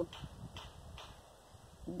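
A pause in talk, filled by faint outdoor background noise: a low rumble with three soft ticks about half a second apart.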